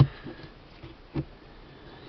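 Quiet background with a single short, soft knock about a second in.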